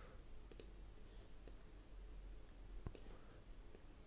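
Near silence with about four faint, scattered clicks from a computer input device, the loudest about three seconds in.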